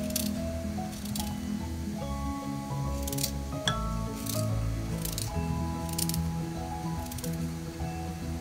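Background music with sustained notes, over which a knife slices through a raw radish held in the hand: a series of short, crisp cuts about once a second.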